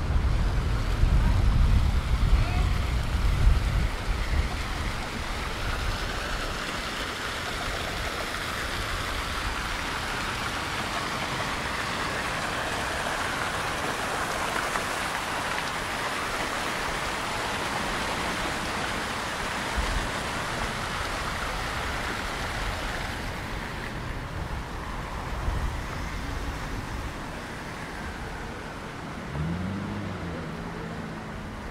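Water from a stone fountain's jets splashing into its basin, a steady hiss that swells as it draws near and fades away about three-quarters of the way through, leaving street traffic. A low rumble sits under the first few seconds.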